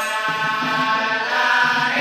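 Dikir barat chorus of many voices chanting together in unison, holding a steady melodic line.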